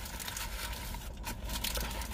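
Close-up chewing and the faint crinkle of paper burger wrappers: a scatter of small soft clicks over a low steady hum inside a car.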